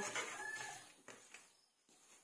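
The tail of a rooster's crow, a held pitched call fading out in the first half second or so. A few faint clicks follow, from metal tongs and plastic bags as bread rolls are bagged.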